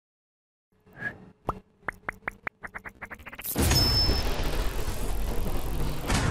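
Logo-intro sound effect: a run of short blips that come faster and faster, then a loud rush of noise from about halfway through that carries on to the end.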